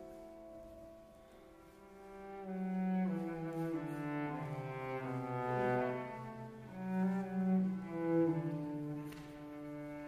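Cello playing a slow phrase of held, bowed notes that step down into its low register, then climb back up and fall again about seven seconds in.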